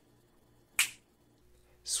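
A single sharp finger snap, a little under a second in, with near silence around it.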